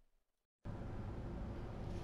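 Dead silence for about half a second, then steady background room noise: a faint, even hiss and hum with nothing standing out of it.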